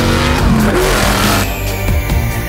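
An off-road race car's engine revving, pitch rising and falling, mixed over soundtrack music; about three-quarters of the way through the engine sound gives way to the music alone.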